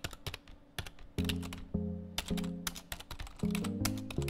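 Computer keyboard typing: a rapid, uneven run of key clicks. About a second in, background music with sustained notes joins under the clicks.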